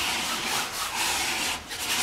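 Palette knife scraping oil paint across a canvas in a long stroke that breaks off briefly near the end and starts again.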